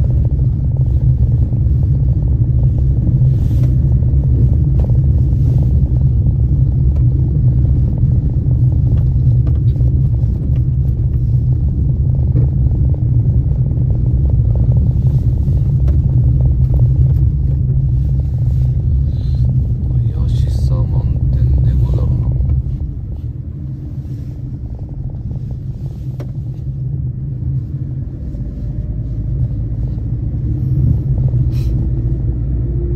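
Road noise inside a moving car: a steady low rumble of engine and tyres on the road, which drops in level about three-quarters of the way through.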